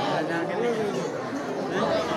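Several voices talking at once in a steady chatter, overlapping with no pause.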